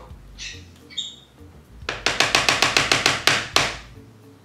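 A spoon rapped quickly against the rim of a dish, about a dozen sharp knocks at roughly six a second for just under two seconds, knocking off the chicken casserole filling; a couple of lighter clinks come before it.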